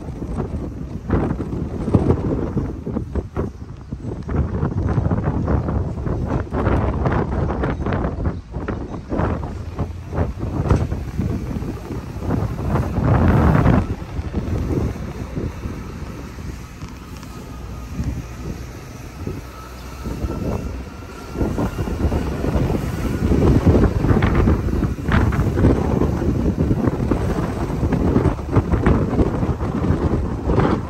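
Wind buffeting the microphone over the road and tyre noise of a car driving, rising and falling in gusts, loudest about halfway through and again near the end.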